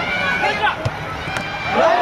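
Several voices shouting over one another from football players and spectators, swelling into a louder outcry near the end as a shot goes in at the goal.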